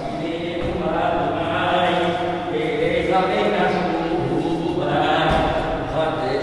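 Men's voices chanting a Hebrew prayer in a slow, drawn-out melody.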